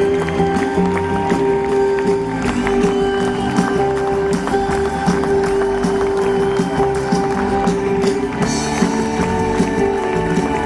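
Live band playing, with drums and a long held note that runs under gliding melody lines.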